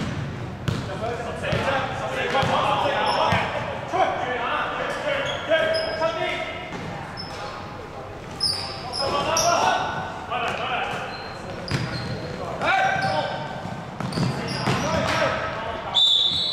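Indoor basketball game echoing in a large hall: a basketball bouncing on the wooden court, brief sneaker squeaks, and players calling out to each other.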